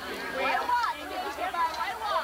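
Indistinct chatter: several people talking at once, their voices overlapping, with no single clear speaker.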